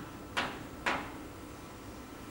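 Chalk striking a blackboard in two short, sharp strokes about half a second apart while writing, over a steady room hum.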